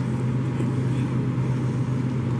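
A steady low machine hum over an even background hiss, level and unchanging.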